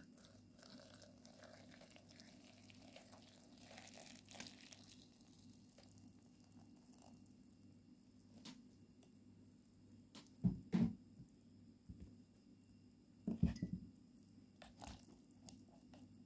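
Hot water poured faintly from a jug onto cut eggplant cubes in a plastic container over the first few seconds, followed by scattered soft knocks and handling rustles, the loudest a short cluster about ten seconds in and another past thirteen seconds.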